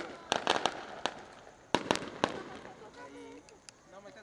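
Firecrackers going off in an irregular string of sharp bangs, about seven loud ones in the first two and a half seconds and a few fainter pops after.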